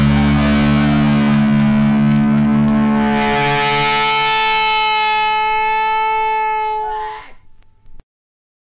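The end of a heavy metal track: heavy distorted electric guitar over bass. About three seconds in the bass drops out and a held guitar chord rings on steadily, then the sound cuts off suddenly about seven seconds in.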